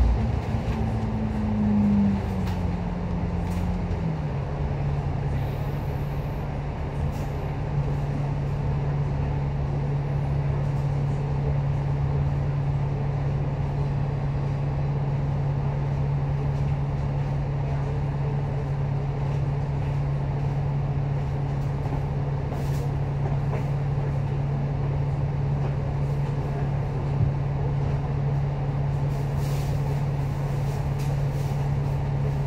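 Double-decker bus's diesel engine heard from inside the bus: its note drops over the first few seconds as the bus slows to a stop, then it idles steadily.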